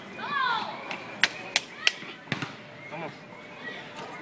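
Background voices with children playing, a high falling shout just after the start, then three sharp knocks about a third of a second apart in the middle and a fourth a moment later.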